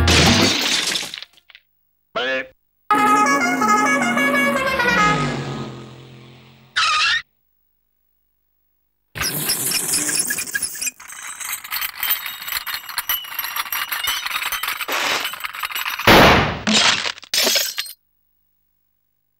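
Cartoon sound effects: a crash of breaking objects at the start, a character's wordless vocal sound falling in pitch and fading, then a stretch of clattering effects that ends in loud breaking crashes. Two short silences break it up.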